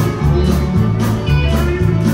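Live band playing an instrumental stretch of a country-rock song: electric bass and guitars over drums with a steady beat.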